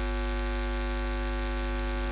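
Steady electrical mains hum with a buzzy row of evenly spaced overtones, picked up in the audio line.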